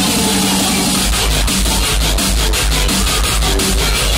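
Loud electronic dance music from a DJ set. About a second in, a heavy bass beat comes in with quick, regular ticks over it.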